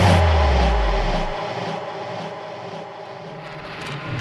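Ambient section of a drumfunk track with no drums: a deep sub-bass note, sliding slightly downward, fades out in the first second or so, leaving a dark atmospheric pad that swells again near the end.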